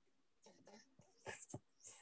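Near silence on a video-call line, broken by a few faint, short hisses and clicks such as breaths or mouth noises.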